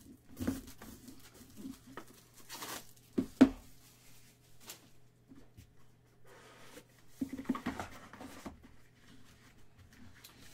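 A cardboard trading-card box (2018 Leaf Valiant baseball) being handled and opened: scattered scrapes and rustles, with two sharp knocks a little over three seconds in as the box meets the table, and a stretch of rustling and scraping around seven to eight seconds as the contents are lifted out.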